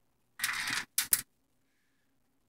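Handling noise: a brief scrape about half a second in, then two quick clicks about a second in.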